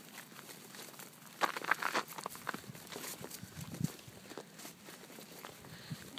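Footsteps of a person walking over dead grass and patchy snow: faint, uneven steps, clearest between about one and a half and three seconds in.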